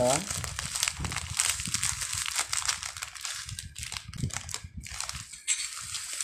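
Plastic wrapper of crushed Skyflakes crackers crinkling as the crumbs are shaken out into a mixing bowl, a run of small irregular crackles.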